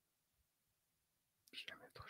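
Near silence: room tone, then a faint man's voice begins to speak near the end.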